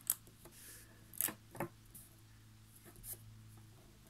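Small neodymium magnet spheres clicking together as sheets of them are pinched into shape by hand: a handful of sharp clicks spaced irregularly, about a second apart.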